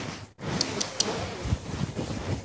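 Loud rustling and rubbing handling noise, like fabric or fingers rubbing over a phone's microphone, with a few sharp clicks about half a second to a second in and some dull thumps.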